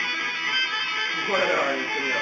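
Electric guitar played lead, held notes ringing, then sliding notes that swoop up and down in pitch a little over a second in.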